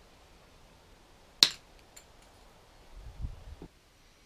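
Hand tools working on plastic guitar binding at a wooden bench: a single sharp click about a second and a half in, a couple of faint ticks, then a short spell of low knocking and handling near the end.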